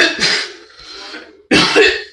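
A person coughing: a harsh double cough at the start and another about a second and a half later.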